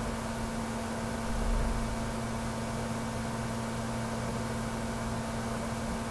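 Steady hiss with a low electrical hum: the background noise of a voice recording, with a slight low bump about a second and a half in.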